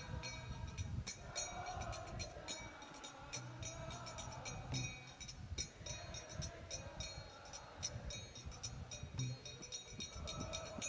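Kirtan music between sung lines: hand cymbals (kartals) struck in a steady rhythm over a wavering melody and low accompaniment.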